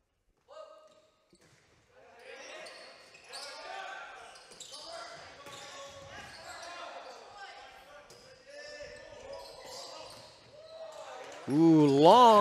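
Volleyball gym sound: after a second or two of near silence, indistinct voices of players and spectators carry through the hall, with a few short thuds of the volleyball being bounced and struck.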